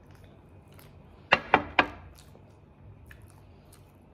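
A ceramic mug set down on a glass tabletop: three quick, ringing clinks about a second and a half in, followed by a few faint small clicks.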